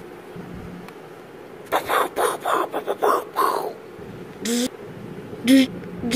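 A person's voice making mouth sound effects: a quick run of sharp bursts for about two seconds, then two short vocal sounds about a second apart near the end.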